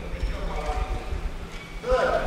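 Many hands thumping on wooden desks in a large chamber, a dense, irregular low knocking, the customary desk-thumping approval of an announcement, with voices in the hall underneath.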